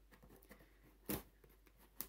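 Scissors cutting the packing tape on a cardboard shipping box: one short, sharp cut about a second in, otherwise quiet.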